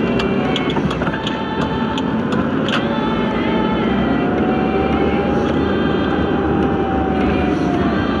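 Steady engine and road noise of a moving vehicle, heard from inside it, with pitched tones over the rumble and one long held tone from about halfway through.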